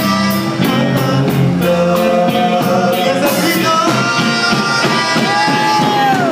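Live conjunto band playing: accordion lead melody over drums and bass with a steady beat. Held accordion notes slide down in pitch near the end.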